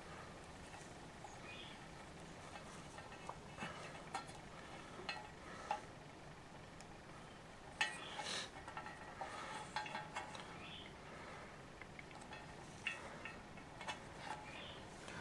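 Faint rustling and small clicks of electrical wires being handled and threaded through a cable strain relief on a sheet-metal heater panel, coming in short scattered clusters.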